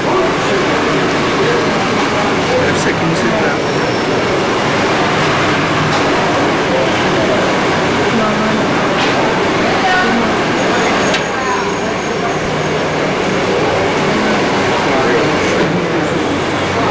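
A steady din of several people talking over one another, with no single voice clear, and a few faint clicks.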